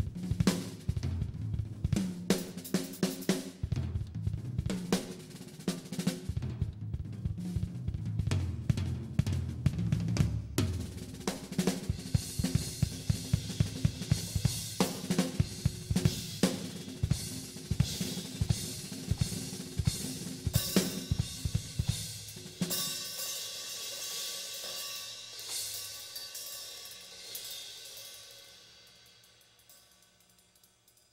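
Drum solo on an acoustic drum kit: fast, dense strokes across the snare, toms and bass drum with cymbal crashes. About 22 seconds in the drumming stops and the cymbals ring on and fade away near the end.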